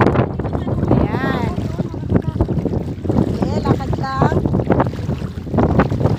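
Wind buffeting a phone microphone at the shoreline, a loud gusty rumble, with shallow seawater sloshing; brief voices call out about a second in and again near the four-second mark.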